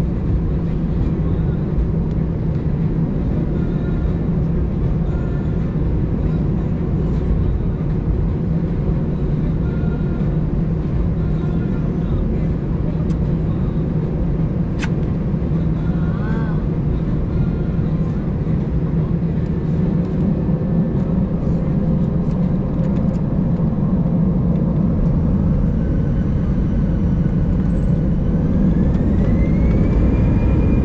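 Cabin noise of an Airbus A319 taxiing, heard from a seat over the wing: a steady low drone of the idling jet engines, with a single click about halfway through. Near the end a whine rises in pitch and the sound grows louder as the engines begin to spool up for the takeoff roll.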